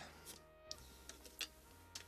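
Near silence: room tone with a faint steady low hum and a few faint clicks.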